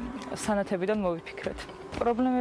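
A woman talking, with nothing else heard over her voice.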